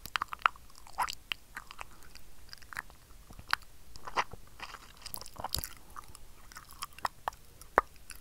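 Close-mic inaudible whispering into cupped hands: irregular wet clicks and pops of lips and tongue, with a few faint breathy stretches.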